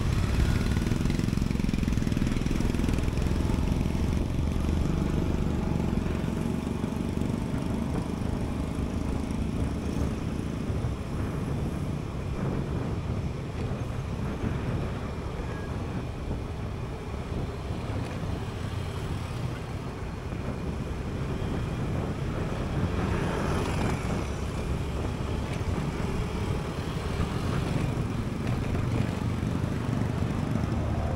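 Honda Beat scooter's small single-cylinder engine running as it moves through traffic, with road and wind noise and other motorcycles, cars and a truck close by. The noise is steady, with a brief louder rush a little past the middle.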